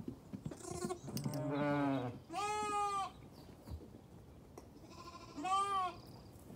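Zwartbles sheep bleating three times: a deeper, wavering bleat about a second in, then two higher-pitched bleats, one around two and a half seconds and one near the end.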